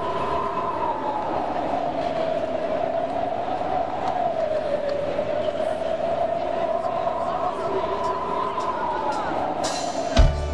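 A sustained instrumental drone from the stage, two held tones that waver slowly in pitch, over a crowd murmuring in a large hall. Right at the end the band comes in with drum hits.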